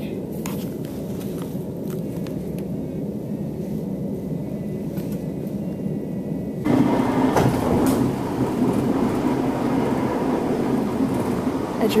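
A passenger train heard from inside the carriage while it runs: a steady low rumble that suddenly becomes louder and harsher about two-thirds of the way through.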